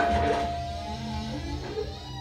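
Film trailer soundtrack: a single held ringing note fading away over a low, steady rumbling drone.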